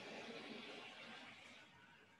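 Faint soft rustle of a hand rubbing the face and hair, fading out after about a second and a half.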